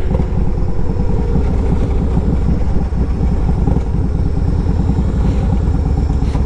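2012 Yamaha Road Star Silverado's 1700 cc V-twin running steadily under way, a deep, even pulsing exhaust.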